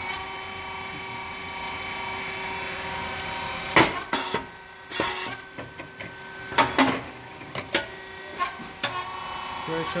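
Rice cake popping machine running: a steady hum of its motor and hydraulic pump, with a string of sharp cracks and short hisses from about four seconds in as the machine cycles.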